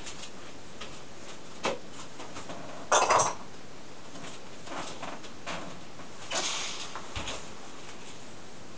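Short clinks and knocks of hard plastic cupping equipment, the suction cups and hand pump, being handled and set down. There is one click early on, the loudest cluster about three seconds in, and a few more clatters around six to seven seconds.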